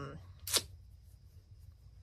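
One short, sharp click about half a second in, following the trailing end of a spoken "um", then quiet room tone.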